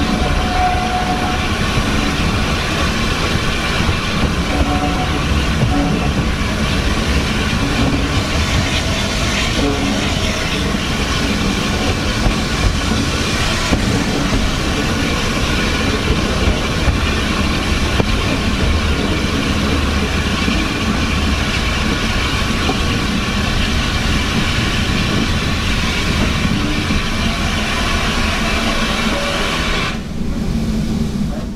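Steam train hauled by an Austerity 0-6-0 saddle tank locomotive, moving slowly: a steady rumble of wheels on rail with a constant high-pitched whine held over it.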